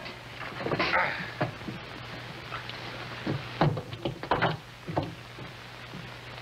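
Dull knocks and thumps from a heavy burlap sack of cannonballs being hefted and handled on wooden boards, several in quick succession past the middle.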